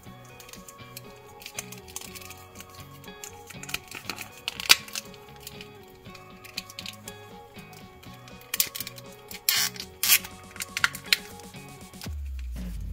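Background music, with sharp plastic clicks and snaps from the 1992 Mutatin' Leo transforming figure's parts being twisted and clicked into place. The loudest click comes about halfway through, and a cluster follows near the end.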